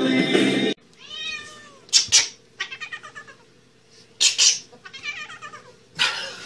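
Music stops abruptly under a second in. A cat follows: one rising-and-falling meow, then harsh noisy bursts about two and four seconds in, each followed by wavering, yowling calls.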